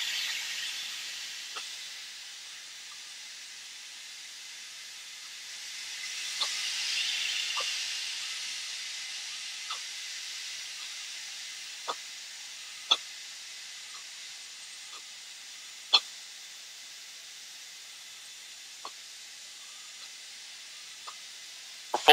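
Steady hiss on a fighter jet's cockpit intercom, swelling for a couple of seconds about six seconds in, with scattered faint clicks.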